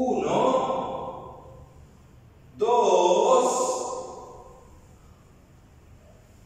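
A man's voice sounding twice in drawn-out calls, each trailing off with echo in a bare room.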